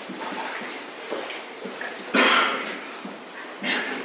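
Handling noise on a handheld microphone: a loud rustle about two seconds in and a shorter one shortly before the end, with faint scattered room sound between.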